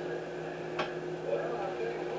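Hands scooping ground deer meat out of a stainless steel bowl into a loaf pan: faint handling sounds over a steady hum, with a single click about a second in.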